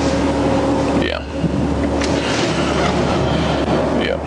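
Steady loud rushing noise with a low hum inside a car's back seat, typical of the cabin's engine and ventilation noise and passing traffic. There is a brief vocal sound about a second in.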